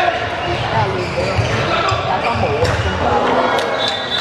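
A handball bouncing on the indoor court during play, in repeated low thumps, with voices of players and onlookers calling over it.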